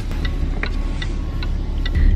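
Steady low rumble inside a car cabin, with a light, regular ticking of two to three ticks a second.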